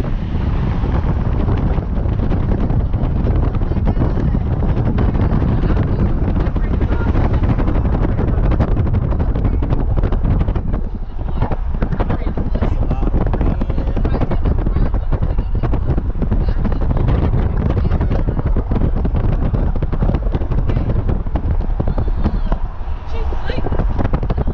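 Wind buffeting the microphone with road noise from a moving car, a loud, steady rumble with constant flutter.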